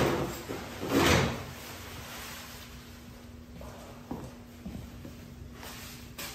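Paper towels being handled while a mess is wiped off a tiled restroom floor: two loud rustles, one at the start and one about a second in, then softer scuffs and a few light knocks.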